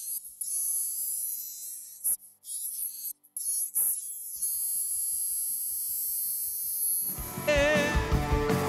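A live lead vocal heard through a de-esser's sidechain audition: only a thin, hissy top band of the singing comes through, the sibilant S sounds and breath, with the body of the voice filtered away. About seven seconds in the full-range vocal recording comes back.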